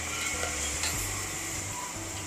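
Faint steady background noise with a low hum underneath, and a few faint ticks.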